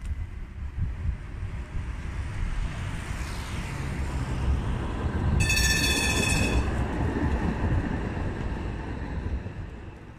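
Stadler Citylink tram-train approaching and passing close by on street track, its running sound swelling to a peak midway and then fading as it moves off. As it passes nearest, a shrill high tone sounds for about a second.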